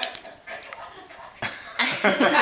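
A toddler's put-on straining whine, part of a mock struggle to tear open a plastic snack packet, rising loud near the end over faint crinkling of the wrapper.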